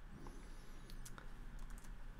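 A few faint clicks of computer input at the desk (keys or mouse) over a low room hum.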